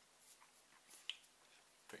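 Near silence, with a few faint small clicks and ticks of hands handling a cloth badge and a packaged item over a cardboard box.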